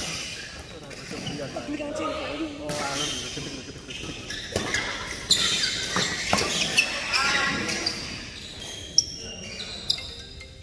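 Badminton rally in a large indoor hall: sharp cracks of rackets hitting the shuttlecock, several in the second half. Voices talk in the background, mostly in the first half.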